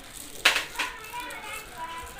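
Thin plastic produce bag crinkling sharply as it is handled, about half a second in and again briefly just after, with children's voices faintly in the background.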